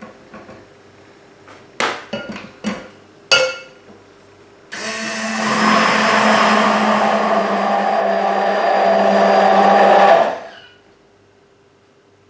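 A few sharp knocks, then a stick blender running for about five and a half seconds in a jug of olive oil and caustic soda soap mixture, growing a little louder before it stops. The blending is mixing the raw soap batter to make it thicken.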